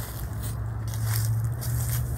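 Rustling and scraping close to the microphone in several short bursts, over a steady low hum: clothing brushing and handling noise as someone moves right next to the camera.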